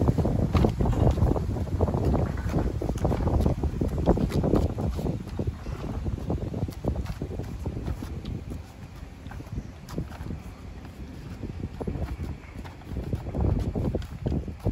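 Gusty wind buffeting the phone's microphone as a storm front comes in, a heavy low rumble for the first several seconds, then easing off in the second half.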